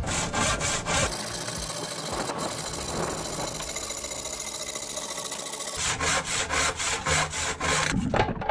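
Hand saw cutting across a wooden plank, in quick, rhythmic back-and-forth strokes. The middle stretch turns into a steadier, continuous rasp.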